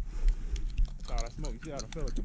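A man's voice talking at a distance, quieter than the nearby talk around it, over a steady low rumble of wind on the microphone.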